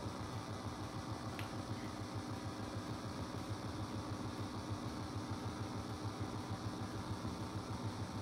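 Steady low background hum with a faint, even low pulsing, and one faint click about one and a half seconds in.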